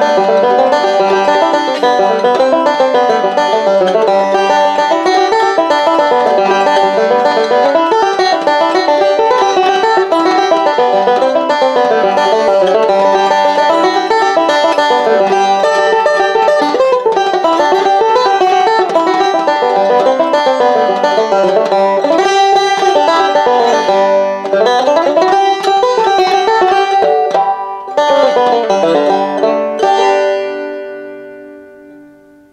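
Solo resonator banjo picking a fiddle reel, with a steady run of plucked notes. Near the end the tune closes on a last note that is left to ring and die away.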